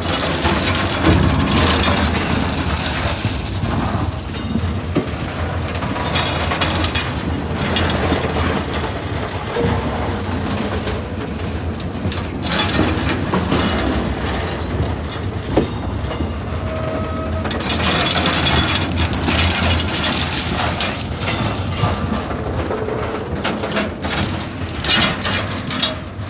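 Loaded ballast hopper wagons of a freight train rolling past close by: steel wheels running on the rails with steady rumbling and the rattling and clanking of the wagons' running gear.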